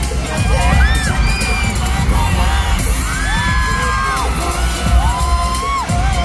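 Loud pop dance track with a heavy bass beat over a concert PA, with a crowd of fans cheering and letting out long, high screams several times.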